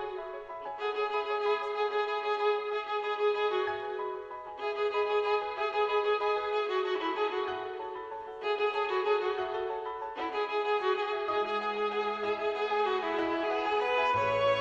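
Instrumental background music: a sustained melody that moves in phrases of about four seconds, each starting afresh after a brief dip.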